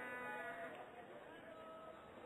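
Faint stadium sound with a drawn-out distant shout from a single voice that fades about half a second in, then a few faint scattered calls.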